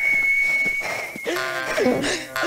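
A high whistle slides up and holds one steady note for over a second, warbling briefly before it stops. Several pitched cartoon sounds with bending tones follow.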